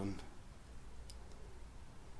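The last of a spoken word, then quiet room tone with two faint short clicks a little after a second in.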